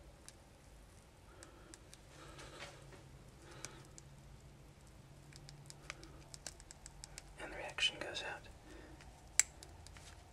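Quiet handling noises as fingers adjust paper clips and alligator-clip leads on a cloth: scattered light clicks, a louder rustle about three-quarters of the way through, and one sharp click near the end.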